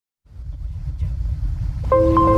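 Intro sound design: a low rumble starts from silence and swells up, and just before the end a chord of steady held tones comes in as the music begins.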